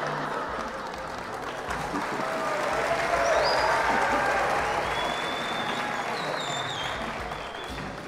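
Studio theater audience applauding and cheering, with a few high whistles in the second half; it swells about three seconds in and dies down toward the end.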